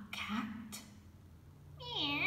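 A cat meowing: one meow begins near the end, starting high and falling in pitch before levelling off. A brief burst of noise comes just before, at the very start.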